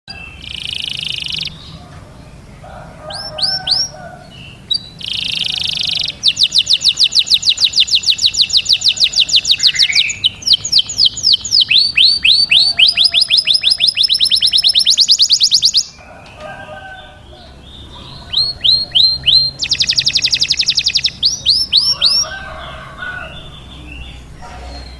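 Domestic canary singing a long, loud song: short buzzy rolls and trills of fast repeated down-sweeping notes. The loudest stretch is a rapid trill of about ten notes a second through the middle, followed after a brief lull by more trilled phrases near the end.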